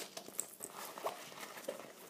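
Hand rummaging in a fabric cosmetic pouch: soft rustling and scattered light clicks as small wrapped items such as tampons are handled and taken out.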